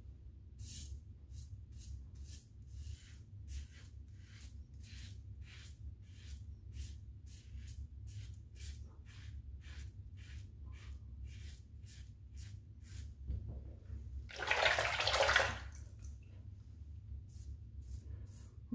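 Double-edge safety razor with an Astra blade scraping through stubble and lather in short strokes, about two or three a second. About fourteen seconds in, a brief rush of running water lasts about a second.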